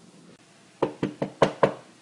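Five quick knocks in a row, about five a second, starting nearly a second in.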